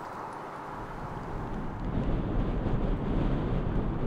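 Wind buffeting an outdoor microphone: a low rumble over a steady hiss, growing stronger after about a second.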